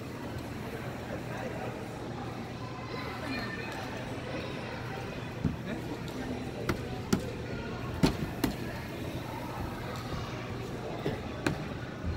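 Indoor public-hall ambience: a murmur of distant voices over a steady low hum, with about half a dozen sharp knocks and taps in the second half.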